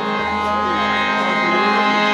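Qawwali accompaniment on harmonium, holding a sustained chord between sung lines, with no clear drum strokes.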